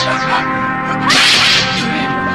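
Dubbed sword-swing whoosh effects over background music: a short swish at the start and a longer, louder one about a second in.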